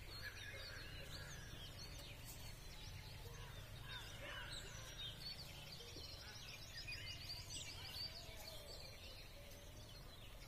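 Several small birds chirping and calling, faint, with a quick trill of repeated high notes a little past the middle, over a steady low outdoor rumble.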